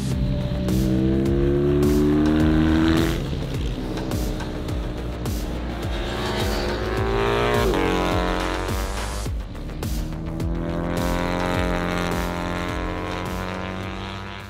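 Custom BMW R nineT track bikes' air/oil-cooled boxer-twin engines being ridden hard on a racetrack. The engine note climbs through the revs, falls about three seconds in, climbs again, then drops sharply as a bike passes close by near the middle. It climbs once more in the last few seconds.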